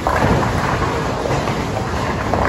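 Bowling ball rolling down a wooden lane, a steady loud rumble.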